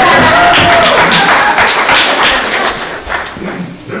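Audience applauding, many hands clapping with a few voices mixed in, dying away over the last second or so.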